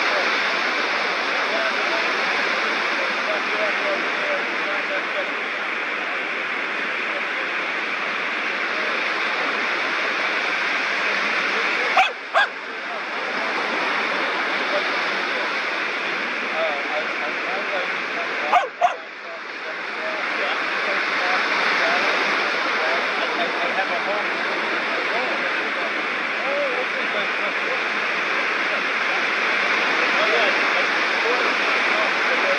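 Small waves breaking and washing up a sandy beach: a steady hiss of surf. It is broken twice by a brief click and dropout, about twelve seconds in and again some seven seconds later.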